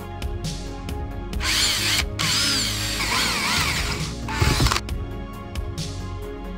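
Electric drill-driver running in several short runs, its whine wavering up and down in pitch, driving screws to fix the door clasps into the wooden frame, with a knock near the end of the runs.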